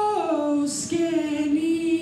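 A woman singing solo, unaccompanied, into a handheld microphone in long held notes. The melody slides down in pitch and then settles on a held low note from about a second in.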